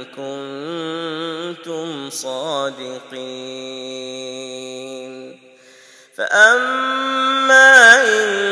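A man's voice chanting Quranic recitation in the melodic tajweed style of an imam leading prayer. He holds long notes, wavering at first and then steady. A short breath pause comes a little past halfway, then he resumes louder on a higher held note.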